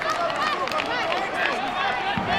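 Many voices in a crowd of spectators calling and shouting over one another, with no single voice clear.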